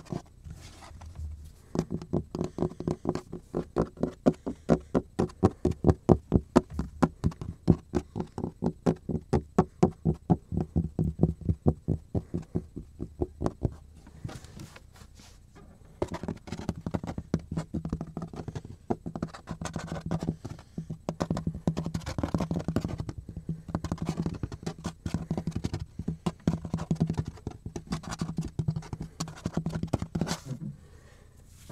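Fingernails tapping on a cutting board in quick runs of about five taps a second. After a short pause near the middle the tapping turns faster and denser, mixed with scratching over a low steady hum.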